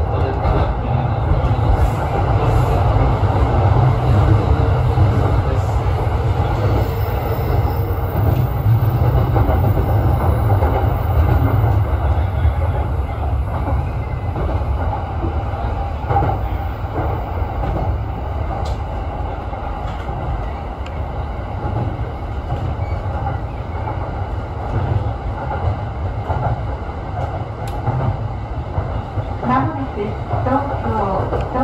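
Electric commuter train running along the track, heard from inside the front car: a steady rumble of wheels on rail and running gear with a few faint clicks. The rumble eases somewhat in the second half.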